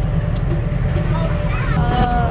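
Steady low rumble of a farm trailer ride on the move, from its towing vehicle and running gear. A high-pitched voice starts about halfway through.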